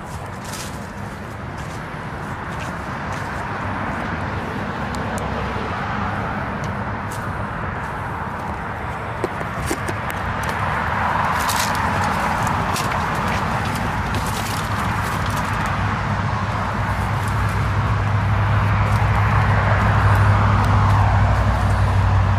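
Steady road traffic from a busy street: passing cars swell about halfway through and again near the end, with a low engine rumble building toward the end. Light, scattered crunches of footsteps on dirt and twigs.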